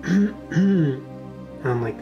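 A person clearing their throat twice in quick succession, over soft background music.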